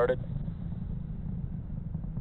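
Low, steady rumble of a Falcon 9 first stage's nine Merlin engines firing during ascent.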